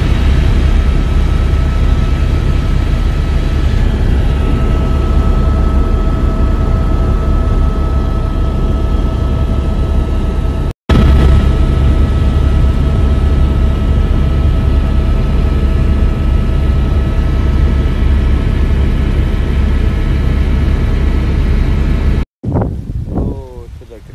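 Helicopter in flight, heard from inside the cabin: a loud, steady drone of rotor and engine with a constant whine over it. It breaks off for an instant about eleven seconds in, then carries on unchanged.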